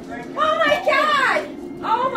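A woman shrieking in surprise: one long, high-pitched cry without words from about half a second in, then a second cry starting near the end.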